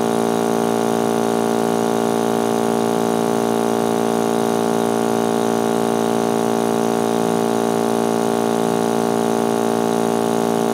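Electric laboratory vacuum pump running with a steady, unchanging drone, pulling suction through a filter flask during a vacuum filtration.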